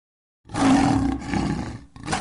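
A lion roaring, a logo sound effect, starting abruptly about half a second in and dying away near the end.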